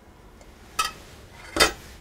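A stainless steel ladle and saucepan of marinara clinking as they are handled: a light clink with a short ring a little under a second in, then a louder, heavier clunk about half a second later.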